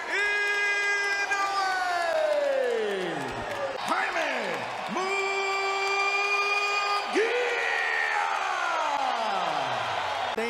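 A boxing ring announcer's drawn-out fighter introduction: a voice holds two long calls, each sliding down in pitch at its end.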